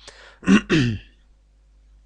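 A man takes a breath and clears his throat once, about half a second in.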